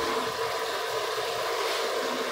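Steady rushing kitchen noise with a faint, even hum underneath, unchanging throughout.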